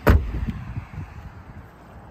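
A 100 series Toyota Land Cruiser door shut with one solid slam at the very start, fading quickly into faint background noise.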